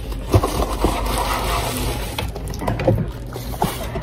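Cardboard headphone box being opened and its paper and plastic packing pulled out: scraping and rustling with a few short knocks.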